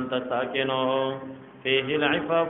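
A man's voice chanting Arabic verse in a drawn-out, melodic intonation, holding long notes. It breaks off briefly just before the end and then resumes.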